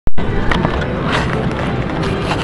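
Casino slot-machine music and electronic jingles, over a low rumble of the handheld camera being moved; a sharp click right at the start, the loudest sound.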